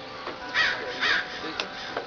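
Two short, loud, harsh bird calls, about half a second apart.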